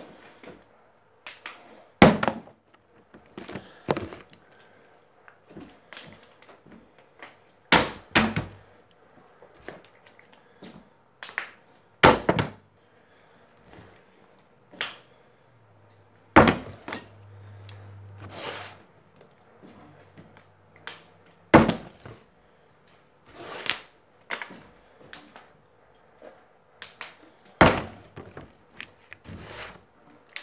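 Plastic water bottle being flipped and landing with a thunk, about six loud landings four to six seconds apart, with softer knocks and handling between them.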